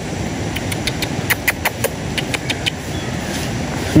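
A clip-on microphone being handled: about a dozen light clicks and taps over roughly two seconds, against a steady rushing hiss.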